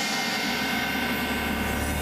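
A sustained drone in the ballet's music: a held chord of steady tones, with a low rumble swelling in about half a second in.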